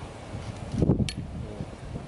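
Metal ladle stirring soup boiling in a large cast-iron kazan, with a short clink about a second in, over a steady rush of wind on the microphone.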